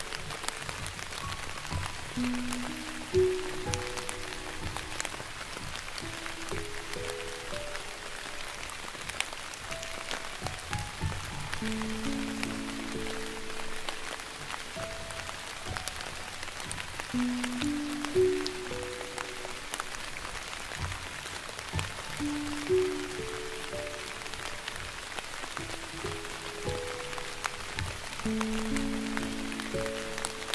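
Slow piano melody over steady rain, the notes held and changing about once a second.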